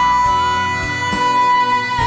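Trot song duet: two female singers hold one long, high, steady note over the band accompaniment.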